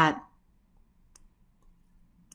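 A single faint click about a second in, over quiet room tone, after a brief spoken "uh" at the start.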